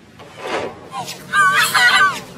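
A loud, high, wavering cry in the last part, heard at several pitches at once as if layered by a pitch-shifting effect. A shorter cry comes about half a second in.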